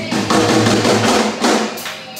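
Live band music: a drum kit fill of repeated snare and bass-drum strikes over a held low bass note, dying away near the end.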